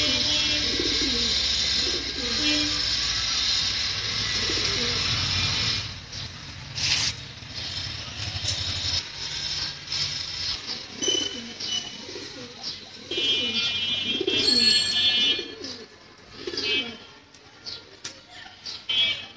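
Lahori pigeons cooing in a cage: repeated low, rolling coos, one after another. For the first six seconds they sit under a loud steady background noise that then drops away.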